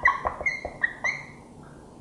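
A felt-tip marker squeaking against a smooth white writing surface as a word is written. It makes a quick run of short, high squeaks that stops a little after a second in.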